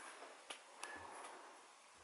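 Near silence with two faint sharp clicks, about half a second in and again a third of a second later.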